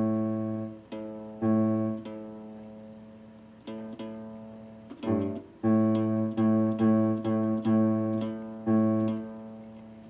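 Open A string of a nylon-string guitar plucked about ten times while it is being tuned, each note ringing and fading. A few widely spaced plucks come first, then from about halfway in a quicker run of plucks about every half second as the string is brought up to pitch from just below.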